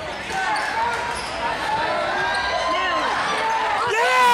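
A basketball being dribbled on a hardwood gym floor during live play, with scattered shouts from the crowd and players and short squeaking glides over a steady crowd din.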